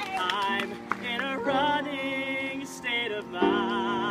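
Grand piano playing an instrumental passage between sung lines of a slow song, with a few chord changes.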